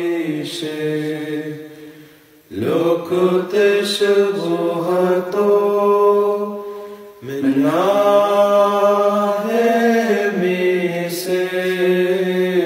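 A solo voice chanting the Syriac Orthodox qolo for departed clergy in long, held, ornamented phrases. The voice breaks off briefly twice, about two and a half and seven seconds in, and each new phrase opens with a rising swoop.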